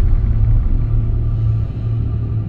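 Dark ambient background music: a loud, steady low drone with faint held tones above it.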